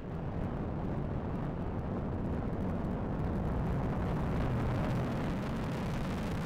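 Atlas V first stage's RD-180 engine firing during ascent, heard as a steady low rumble with faint crackle that swells slightly in the first second.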